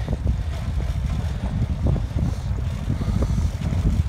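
Uneven low rumble of wind buffeting a phone microphone outdoors, with faint irregular knocks.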